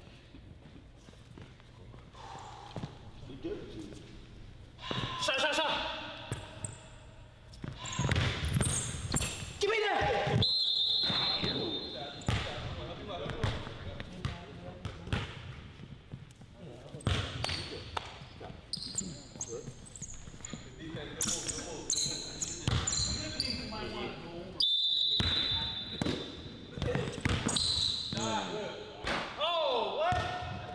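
Basketball being dribbled on a hardwood gym floor, with indistinct voices of people in the gym. Two brief high squeaks come about a third of the way in and again past the middle.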